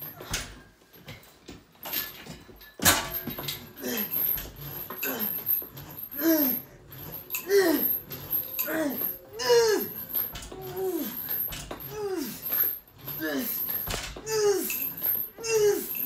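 A man groaning with effort over and over while straining through leg extension reps, each groan sliding down in pitch, about one a second. A sharp knock comes about three seconds in.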